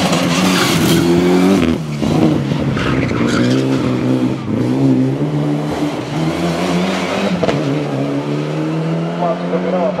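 A Mitsubishi Lancer Evolution rally car's turbocharged four-cylinder engine revving hard as it accelerates past. The engine note climbs, then drops back at each gear change, several times over.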